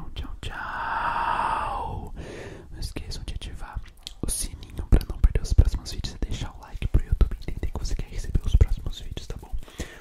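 Close-miked ASMR mouth sounds. A long breathy whisper lasts until about two seconds in. From about three seconds on comes a dense run of wet mouth clicks and lip smacks.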